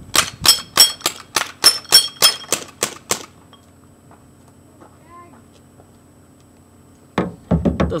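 Pellet pistol fired in a rapid string of about fifteen sharp shots, roughly five a second for three seconds, some followed by a brief ringing tone.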